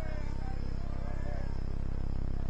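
Steady, low electrical buzz, a mains hum on the audio feed, loud enough to cover the faint background.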